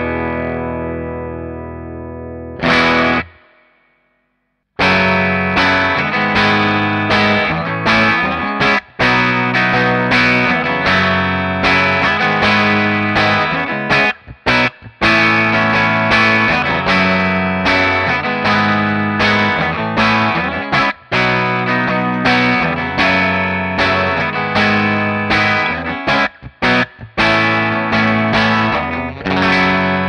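Overdriven electric guitar through an amp: a homemade Telecaster-style Esquire whose hot broadcaster-style Monty's prototype bridge pickup is wired to a 550k volume pot, there to let more treble through. A chord rings out and is struck again, stops briefly, then rhythmic chord riffing carries on with short breaks.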